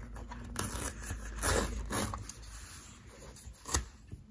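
Fingernails picking and scraping at the paper seal tape on the end of a cardboard smartphone box, with short tearing rasps about one and a half and two seconds in, and a sharp tick just before the end.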